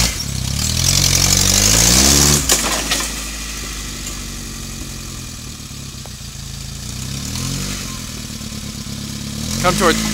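Suzuki Samurai rock crawler's engine labouring under load as it crawls up a boulder. It revs up over the first two seconds, drops back sharply, runs lower and steadier, then picks up again about three-quarters of the way through.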